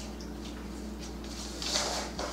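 Dog dropping down onto a hardwood floor, heard as a brief scuffing rustle near the end, over a steady low hum.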